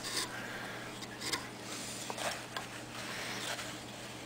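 Faint, soft scraping of a carving chisel paring thin cuts through wood, a few light strokes about a second apart, over a low steady hum.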